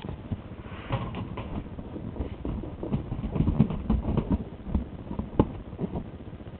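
Scattered, irregular soft thumps and knocks, busiest in the middle, with one sharper click about five and a half seconds in.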